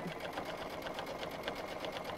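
Home sewing machine stitching at a steady speed, a quick even rhythm of needle strokes as binding is sewn down onto minky plush fabric.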